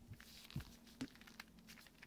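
Faint clicks and taps of a large 8x8x8 plastic puzzle cube being handled and turned over in gloved hands, the sharpest click about a second in, over quiet room tone.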